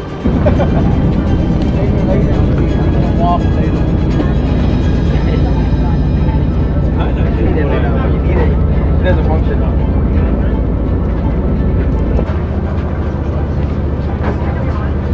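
Steady low rumble of a ferry's engines with passengers' voices over it, under background music. The rumble eases near the end.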